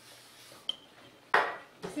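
Knife and fork working on a ceramic dinner plate while food is cut: a light clink with a brief ring about two-thirds of a second in, then a louder scrape a little past the middle.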